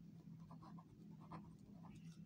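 Faint scratching of a pen on paper as a word is handwritten, a few short strokes.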